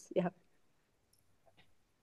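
A single short spoken "yeah", then near silence on the video-call audio, broken by a couple of faint clicks about a second and a second and a half in.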